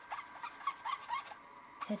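Foam ink-blending sponge dabbed and rubbed along the edges of a paper craft page, with a few faint short squeaks in the first half.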